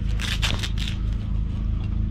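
A steady low engine hum in the background, with a brief burst of crackling, scraping noise during the first second.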